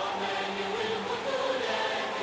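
A choir singing long held notes with musical backing, the opening of a song.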